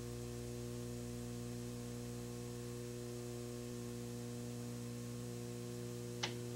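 Steady electrical mains hum with a layer of hiss on the recording's audio track, unchanging throughout, with nothing else heard.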